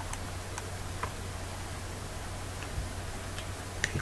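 About six faint computer-mouse clicks, spaced irregularly, over a steady low hum.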